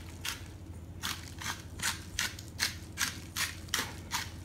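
Spice blend being dispensed from a small hand-held spice container over a bowl of salad leaves: a string of short, crisp, scratchy strokes, about three a second and unevenly spaced.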